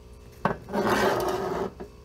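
Close handling noise: a sharp click about half a second in, then about a second of rough scraping and rubbing, as the recording camera is swung about.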